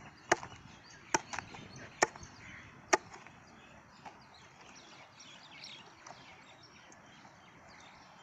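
A curved sickle-like chopping blade striking down through cooked chicken into a wooden log used as a chopping block: four sharp chops, about one a second, in the first three seconds, then quieter.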